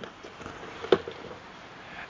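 One short, sharp click about a second in, over a faint steady background hiss.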